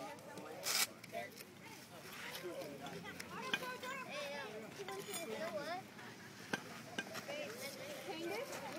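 Voices of children and adults chattering in the background, with a short sharp rasping noise a little under a second in and a single click later on.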